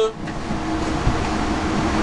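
Steady hiss of a running glassblowing bench torch, with a faint steady hum under it.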